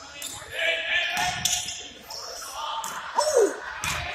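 A basketball bouncing on a hardwood gym floor, with scattered sharp strikes and players' voices calling out, echoing in a large hall.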